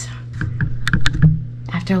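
A quick run of light clicks and taps from hands handling things close to the microphone, over a steady low hum.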